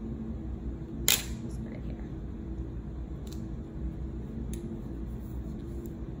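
Glass candle jar being handled, with one sharp click about a second in and two fainter ticks later, over a steady low hum.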